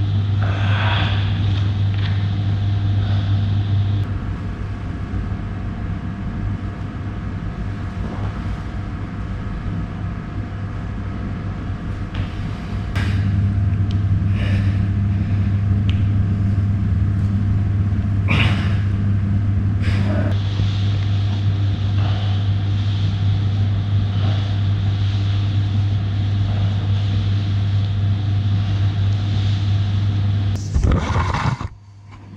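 A steady low mechanical hum that dips in level after about four seconds and comes back up about thirteen seconds in, with a few short sharp noises over it.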